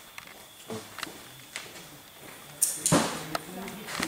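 Faint chatter of people's voices with a few light clicks. About two-thirds of the way in there is a short, louder rush of noise.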